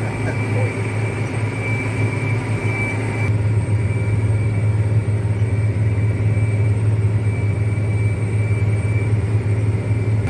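Articulated four-wheel-drive tractor's engine running steadily under load while pulling a vertical tillage tool, heard from inside the cab as a loud, even low drone with a thin steady high whine. About three seconds in, the sound changes abruptly, the drone becoming stronger and the hiss above it dropping away.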